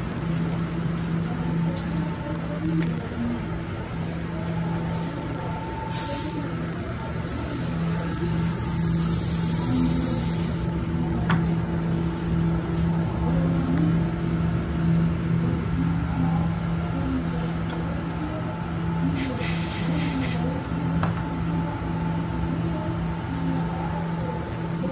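Steady hum of cleanroom air handling and bench exhaust, with a constant low tone. Two bursts of hiss cut in over it, one about six seconds in lasting about five seconds, and a shorter one about nineteen seconds in.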